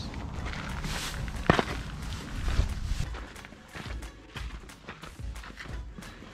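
Footsteps crunching on gravel and railroad ballast, one after another, with a sharper tap about one and a half seconds in.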